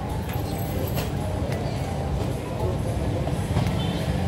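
A steady low background rumble with a few faint clicks scattered through it.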